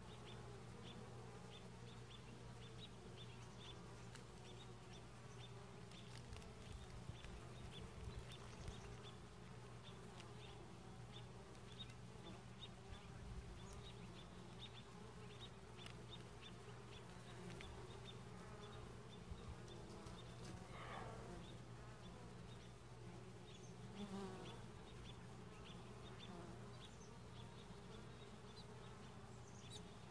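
Faint, steady buzzing of honeybees around a hive that is being opened for inspection.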